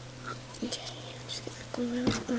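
Light rustling and small clicks of hands handling paper flowers and card stock, with a short low hummed murmur from the crafter near the end.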